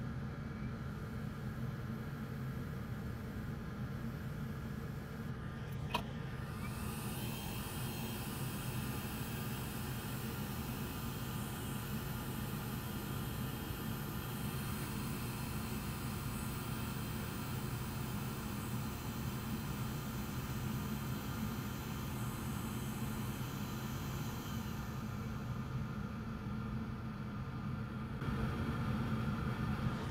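Hot air rework station blowing a steady rush of air with a low fan hum, used to reflow solder and seat a replacement pin on a CPU pad. A single faint click comes about six seconds in.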